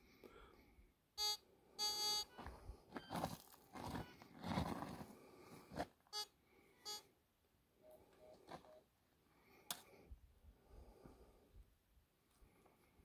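Metal detector giving faint, short electronic beeps on targets: a pair of beeps about a second in and another pair about six seconds in, with quiet noise in between.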